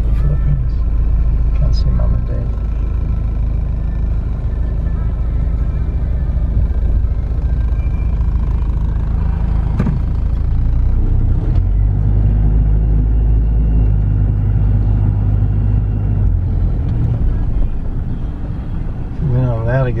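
Car cabin noise while driving: a steady low rumble of engine and road, whose pitch shifts about halfway through.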